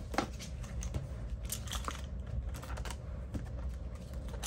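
Cash envelope binder being handled and opened, its clear plastic envelope pages turned over on a desk: a run of light clicks, taps and rustles.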